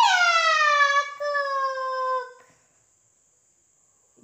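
A toddler's long, high-pitched squeal that slides down in pitch and lasts about two and a half seconds.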